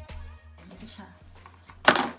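Cardboard product boxes and a plastic mailer bag being handled: light knocks and rustles, then one sharp, loud burst of handling noise just before the end. A music bed fades out in the first half second.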